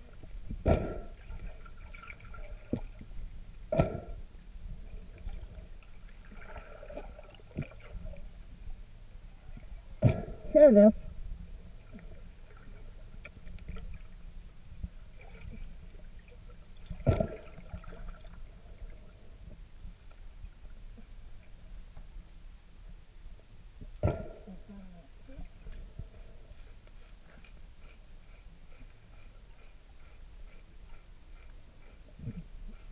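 Short calls of a manatee calf heard underwater, coming every few seconds, the loudest about ten seconds in. They come with a few sharp knocks over a low underwater rumble.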